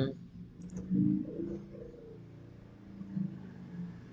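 A few quick computer-mouse clicks about two-thirds of a second in, followed by a low murmured voice for about half a second, over a faint steady hum.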